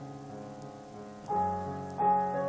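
Solo piano played softly: held notes die away, then a new, louder chord is struck about a second and a half in. The sound is a little thin, picked up on a mobile phone's microphone.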